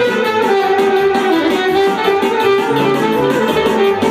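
Live Roma party music: an alto saxophone playing a melody with long held notes over a band accompaniment with plucked, guitar-like chords and a steady bass line.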